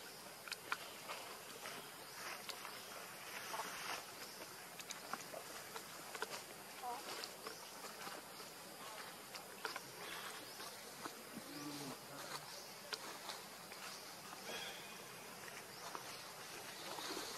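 Faint, steady buzzing of forest insects, with many light clicks and rustles scattered through it.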